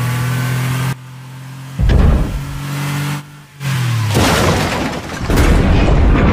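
Action-film sound effects: a car engine's steady hum, broken by a loud crash about two seconds in, then heavy crashing and smashing of metal from about four seconds on as a vehicle is wrecked.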